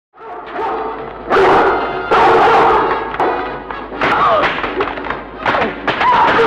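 Soundtrack of an old adventure film fight scene: music under shouting voices and repeated thuds, loudest from about a second in.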